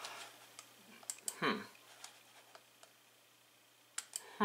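Faint, scattered clicks from a computer mouse switching between web pages, with a sharper click near the end.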